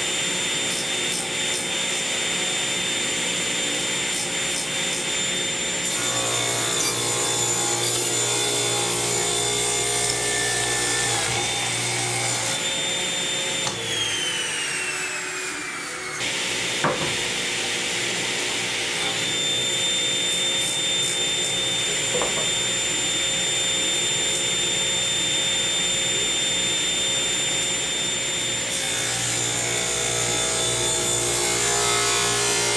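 Table saw running with a crosscut sled, its blade trimming the end of a hardwood cutting-board glue-up of walnut, maple and cherry strips, with a steady high motor whine under the sound of the cut. About halfway through, the whine falls in pitch for a couple of seconds and breaks off, a sharp click follows, and then the saw is running again.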